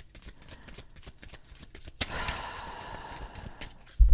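Tarot cards being shuffled and handled: light clicks of cards for the first two seconds, then a steadier rustle of cards from about two seconds in until just before the end.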